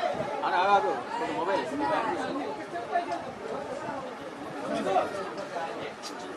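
Indistinct chatter: several people talking over one another.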